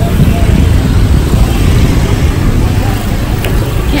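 Wind buffeting the microphone over steady street traffic noise, loud and strongest in the low end.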